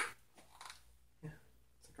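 A quiet room with a few short, soft words of speech and brief pauses between them.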